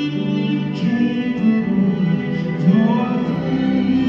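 Symphony orchestra and grand piano playing a slow passage: the strings hold long chords while single piano notes sound every second or so.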